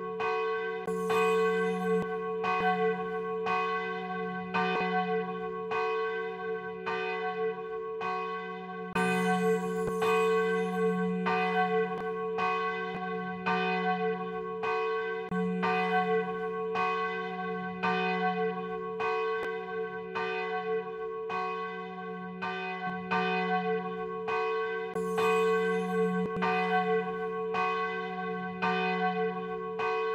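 Church bells ringing in a steady, unbroken run of strokes, about three every two seconds, each stroke ringing on over a sustained low hum.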